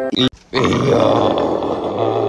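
Cartoon monster growl sound effect: a rough, gravelly growl that starts about half a second in and is held, cutting in after the music stops.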